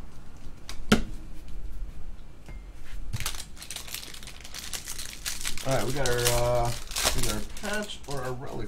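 Foil trading-card pack wrappers crinkling as they are handled and torn open by hand, with a sharp snap about a second in.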